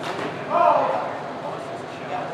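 Indistinct voices of people talking in a large hall, with a short knock at the very start and one voice calling out loudly about half a second in.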